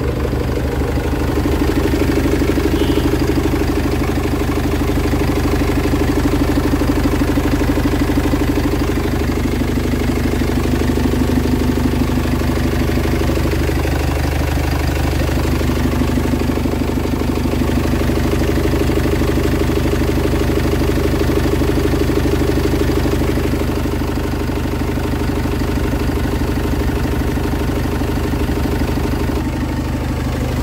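Iveco Eurocargo truck engine idling steadily, heard up close in the open engine bay under the tilted cab.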